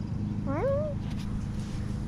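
Long-haired tabby cat giving one short meow, rising in pitch, about half a second in.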